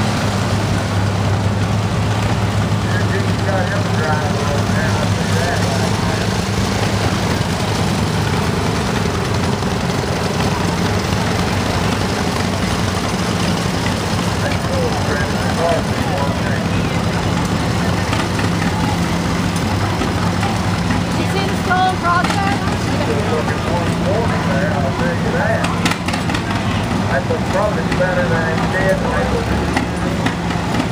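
Antique farm tractors driving slowly past one after another, their engines running steadily at low speed, with a crowd talking in the background.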